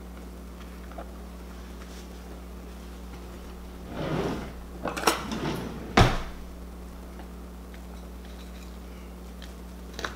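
Kitchen handling sounds as a croissant sandwich is set down on a wooden serving tray and a knife is picked up. There is a short rustle about four seconds in, some clatter, then one sharp knock about six seconds in, over a steady low hum.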